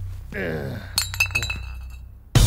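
Glass bottles clinking together: a few quick knocks about a second in, leaving a thin ringing tone that fades away.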